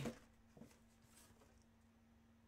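Near silence: faint room tone with a steady low hum, and one faint tap about half a second in.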